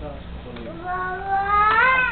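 Baby crying: a short sound about half a second in, then one long wail that rises in pitch and gets louder toward the end.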